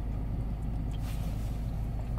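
Steady low rumble of a car's engine and running noise, heard from inside the cabin of an Opel.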